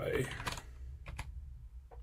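Computer keyboard typing: a handful of separate keystrokes, spaced unevenly, after the tail of a spoken word.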